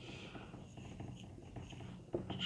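Marker pen writing on a whiteboard: faint, irregular strokes as figures and letters are written.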